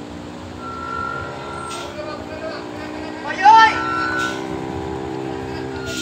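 Diesel engine of a very long cargo truck running steadily under load as it crawls up a steep hairpin. A loud shout from a person cuts in a little past halfway.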